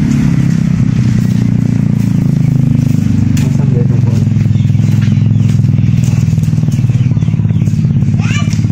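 A small engine running steadily at an even idle, a continuous low drone with a fine rapid flutter.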